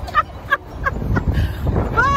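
A woman laughing in a run of short, high-pitched cackles, about three a second, over wind buffeting the microphone.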